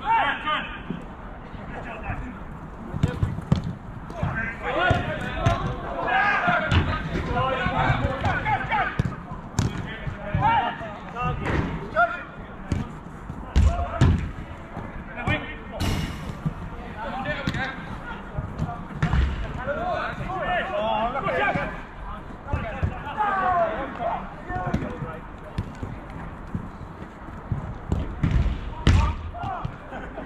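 Players shouting and calling to each other during a small-sided football game, with repeated sharp thuds of the ball being kicked, a few of them loud.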